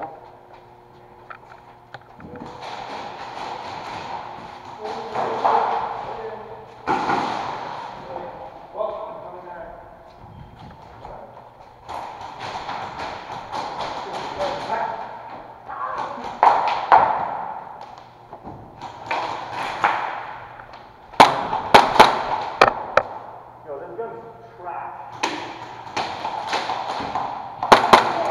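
Airsoft guns firing indoors: sharp snaps in quick clusters, loudest in the last seven seconds, between stretches of rustling movement noise.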